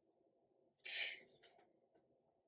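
A woman's short, forceful exhale about a second in, followed by a fainter breath, as she works through a lying-down ab exercise.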